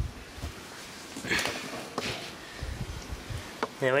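Camera handling noise with a few brief scuffs and clicks over a low rumble, like a person shifting their footing on dirt.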